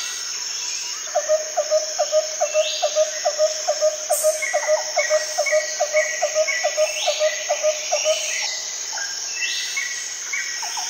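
Outdoor ambience of insects with a steady high buzz and scattered bird chirps. About a second in, a bird starts a rapid, even run of short repeated notes, about three or four a second, and stops about two seconds before the end.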